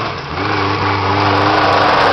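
Suzuki 4x4's engine pulling steadily, growing louder as the vehicle comes close.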